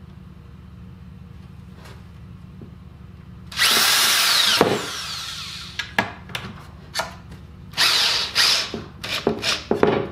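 Cordless drill driving a screw into a wooden board. After a few quiet seconds it runs for about a second with its pitch falling as it slows under load, then gives a string of short trigger bursts, quicker near the end, as the screw is seated.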